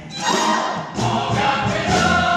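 Live musical-theatre number: the cast singing together with musical accompaniment. There is a short gap right at the start and another just before halfway, then the voices come back in on held notes.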